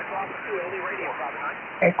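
Upper-sideband audio from a FlexRadio software-defined receiver on the 15-metre band: band-noise hiss with weak, faint voices of stations calling, thin and cut off above the voice range by the receive filter. A strong voice comes in near the end.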